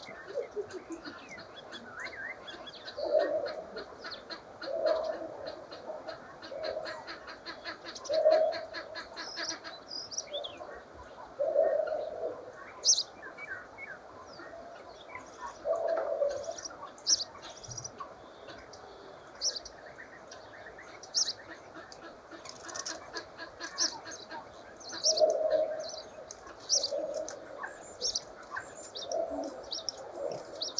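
Common starlings and house sparrows calling. There are short high chirps throughout and a fast run of clicks in the first third, with low cooing calls recurring about nine times.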